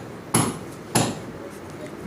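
A pen on a notebook page over a hard table, making two short sharp tap-like strokes about half a second apart while drawing a diode symbol.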